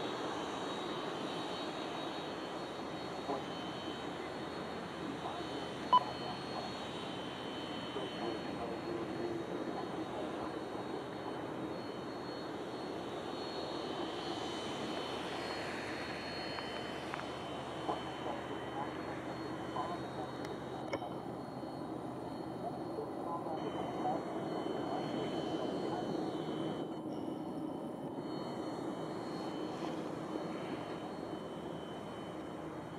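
Jet engines of a taxiing Boeing 767 at idle thrust: a steady engine noise with a faint high whine. There is a single sharp click about six seconds in.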